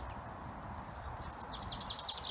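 A small dog's claws tapping on stone paving as it steps slowly over a low pole ladder on a lead.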